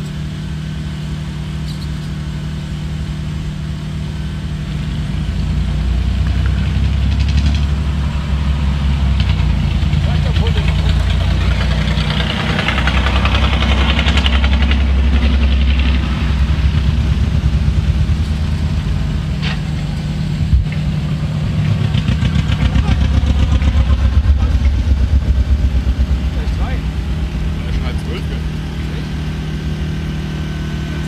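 Radio-controlled scale pickup crawler driving through mud, with an engine-like low rumble that swells and fades twice: louder around the middle and again after about twenty seconds.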